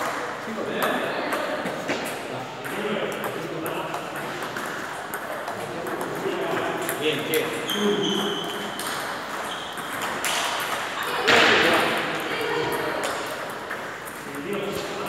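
Table tennis balls repeatedly clicking off paddles and bouncing on the tables, with voices talking in the background. A brief, louder noise comes about three-quarters of the way through.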